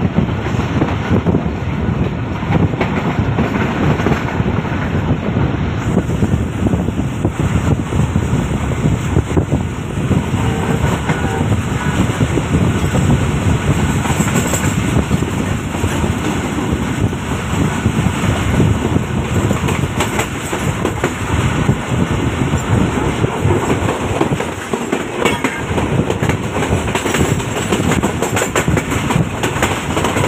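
A Pakistani passenger train coach running at speed, heard at its open door: a steady loud rumble of wheels on the track with rapid clicking and clattering over rail joints.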